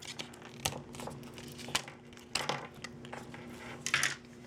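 Plastic packaging being handled as in-ear earbuds and their cord are pulled free of a moulded insert: scattered crinkling with a few sharp clicks.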